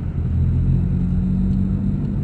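Car driving, heard from inside the cabin: a steady low rumble of engine and road noise with a steady hum.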